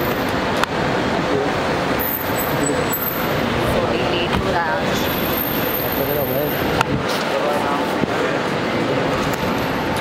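Steady traffic noise with indistinct voices, with a few sharp clicks, one under a second in and two more in the second half.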